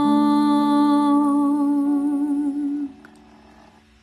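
A woman's soprano voice holding one long sung note on a rounded vowel, steady at first and then with vibrato, stopping about three seconds in. A quieter, steady accompaniment chord sounds underneath and fades out after the voice stops.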